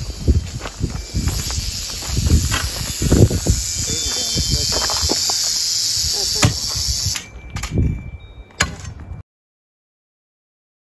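Rattlesnake rattling, a steady high buzz, as it is pinned with a grabber tool. The buzz fades after about seven seconds, with excited voices and a few knocks over it. The sound cuts off abruptly near the end.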